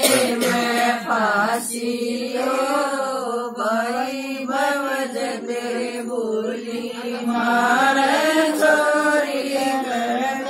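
A group of women singing a Haryanvi folk song together in unison, unaccompanied, with a continuous chant-like melody and no drum or instrument.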